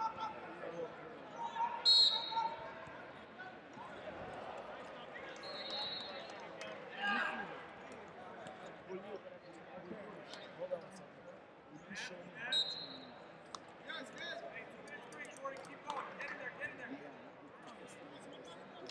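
Wrestling-hall ambience: scattered background voices echoing in a large hall, and dull knocks and slaps from wrestlers on the mats. Short high whistle blasts come about two seconds in, around six seconds and again around thirteen seconds.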